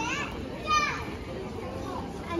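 A child's high-pitched voice calls out twice over the general noise of a busy pedestrian street. The second call, just under a second in, is the louder.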